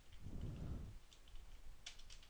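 Faint computer keyboard keystrokes, a few irregularly spaced clicks, the sharpest near the end, over a soft low rumble in the first second.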